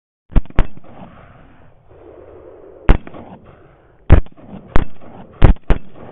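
Rifle shots fired seven times in quick succession, some in fast pairs about a quarter second apart, each a sharp crack with a short echo trailing after it.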